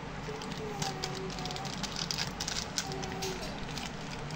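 Thin plastic snack packaging crinkling and crackling as hands squeeze and pull it open, with a dense run of sharp crackles in the middle.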